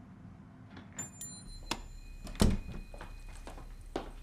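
A door clicking and then shutting with a thump about two and a half seconds in, followed by soft footsteps on the floor.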